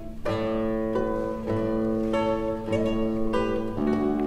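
Solo classical guitar played fingerstyle: a chord struck just after the start, then a plucked melody moving about every half second over a held bass note.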